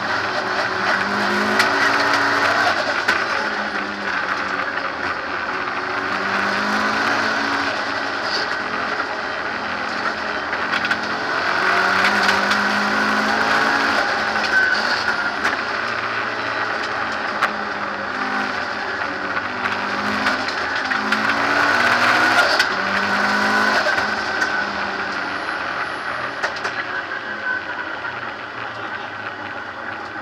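Race car engine heard from inside the cockpit at racing speed. Its pitch climbs in repeated runs and drops back as it accelerates through the gears, over road and wind noise.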